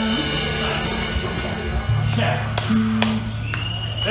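Live rock band letting a song ring out: electric guitar and bass notes held and sustaining, with a deep bass note coming in about halfway and a few scattered drum hits.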